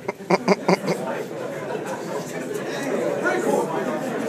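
Several people talking over one another in a large room, with a little laughter. It opens with a quick run of about five loud, sharp pulses within the first second.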